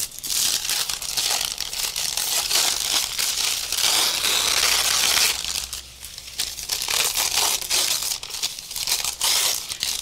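Thin, translucent paper scraps printed with paint off a gel plate, handled and rumpled by hand: crinkling and rustling almost continuously, with a brief lull about six seconds in.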